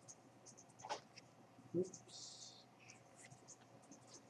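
Quiet room with faint scattered ticks and rustles, and a short soft hiss about two seconds in.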